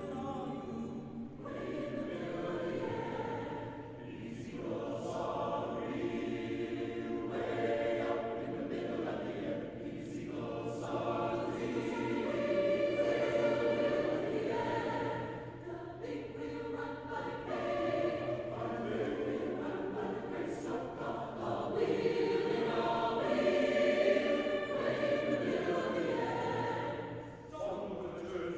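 Large mixed choir of men's and women's voices singing in phrases that swell and ease, loudest near the end, in the reverberant space of a church.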